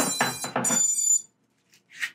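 Battery plugged into the Holybro Kopis 2 HDV FPV quadcopter, with a clatter of handling, and the quad giving two quick groups of high-pitched electronic power-up beeps as it switches on.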